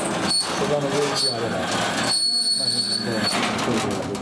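Several people talking at once, steady overlapping chatter. A thin, steady high-pitched tone sounds for about a second in the second half.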